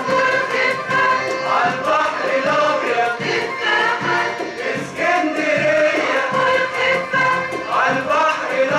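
Mixed Arabic-music choir singing with its ensemble of qanun, oud, violins, accordion and cello, over a steady beat.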